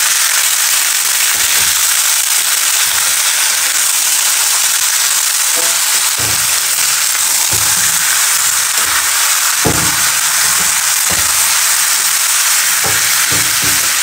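Chicken pieces frying with onions in hot oil in a kadhai: a loud, steady sizzle with crackling. A metal spatula stirring the pan gives several short knocks and scrapes.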